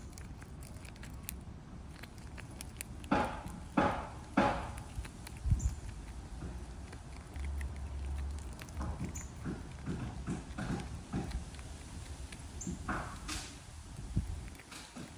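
Chipmunk working a whole peanut in its shell against its teeth and claws. Sharp scratchy scrapes on the shell: three close together about three seconds in, then a run of softer ones later, over a low rumble of hand and handling noise.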